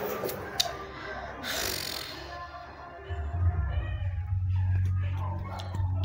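Indistinct background voices and music, with a few sharp clicks and a short rush of noise early on. A steady low hum sets in about three seconds in and continues.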